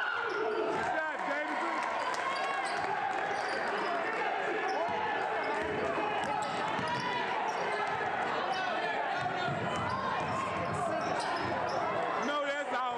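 A basketball dribbled on a gym's hardwood court during play, against steady chatter and calls from many voices in the crowd.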